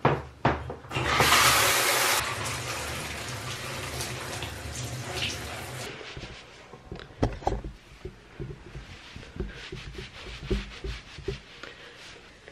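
Water running hard from a bathroom mixer tap, starting abruptly about a second in, easing off and stopping about six seconds in. After it, a towel rubbing wet hair, with scattered knocks and handling sounds.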